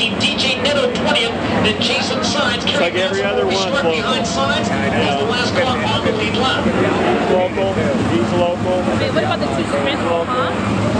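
Winged dirt-track sprint cars' 410 cubic-inch V8 engines racing past at speed, with a dense crackle in the first few seconds, while people talk close by over the engine noise.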